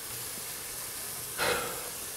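Elk smash burger patties frying on a hot griddle, with buttered buns toasting in a cast iron skillet beside them: a steady sizzling hiss. A brief louder breathy puff comes about one and a half seconds in.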